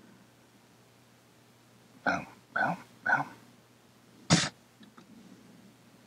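A man's voice making three short wordless sounds in quick succession about two seconds in, then a single short, sharp noise a second later.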